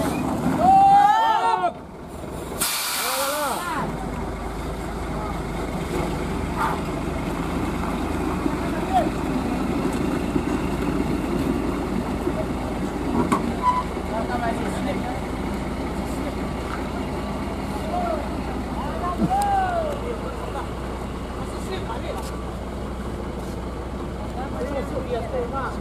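A Hino truck's air brakes release with a short, loud hiss about three seconds in. The truck's diesel engine then runs steadily as the truck pulls forward up the climb, with people calling out over it.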